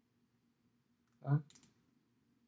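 A person's voice says a short "uh", followed at once by a brief, sharp, high-pitched hissing click; the rest is quiet room tone.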